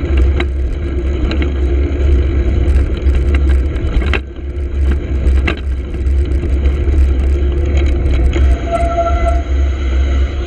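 Wind buffeting the microphone of a camera on a moving bicycle, a loud steady rumble, over tyre noise on a wet road and passing car traffic. A few short knocks come from the bike going over bumps, and near the end there is a brief squeal lasting under a second.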